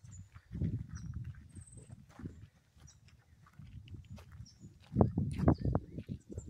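Footsteps on a gravel trail: irregular low, dull thuds in clusters, a few in the first two seconds and louder ones about five seconds in.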